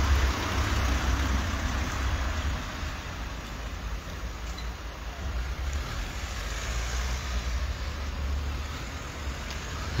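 Street traffic noise: cars moving along the road, with a steady low rumble underneath.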